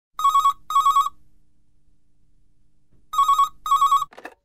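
Telephone ringing with a double ring: two short warbling rings, a pause of about two seconds, then two more rings.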